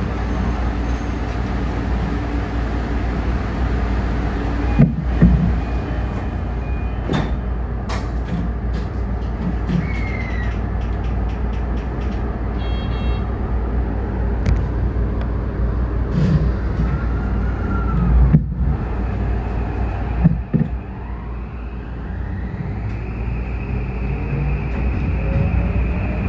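Electric commuter train in motion, heard from the cab: a steady running rumble with a few sharp knocks from the wheels and track, and a whine that rises in pitch near the end as the motors pull.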